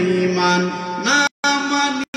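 A man's voice chanting in long, held melodic tones into a microphone. The audio cuts out completely for a moment a little after a second in.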